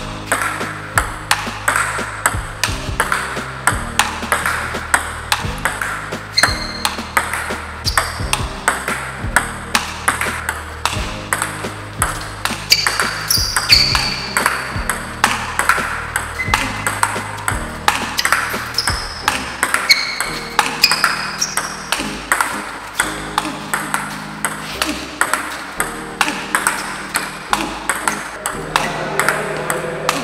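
Table tennis rally: a plastic ball clicking off paddles and the table in a quick, regular run of about three hits a second, with one player blocking with long-pimpled rubber close to the table. Background music plays underneath.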